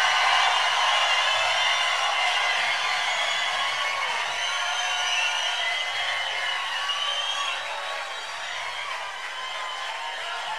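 Concert audience cheering and applauding with scattered whoops at the end of a song, slowly dying down.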